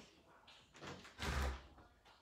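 A heavy thump about halfway through, with a lighter knock just before it.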